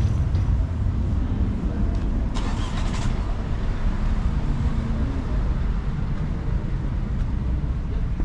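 Car traffic on a car-park road: a steady low rumble, with a brief louder hiss about two and a half seconds in.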